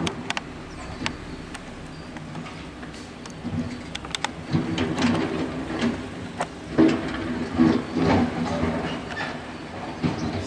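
A motor vehicle's engine running, with a steady low hum that grows louder from about halfway through, and scattered light clicks.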